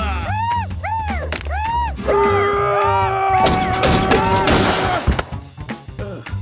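Cartoon music with bouncy sliding notes, then a loud crash and clatter lasting over a second from about three and a half seconds in, as a car falls apart into pieces.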